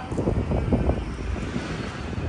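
Wind buffeting the microphone over the rumble of road traffic.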